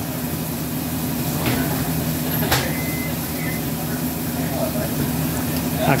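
True cooler's refrigeration unit running, a steady hum of compressor and fan, while the system draws in the last of its R-290 charge. Two light clicks come in the first half.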